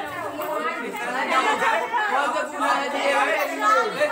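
Several voices talking over one another: classroom chatter.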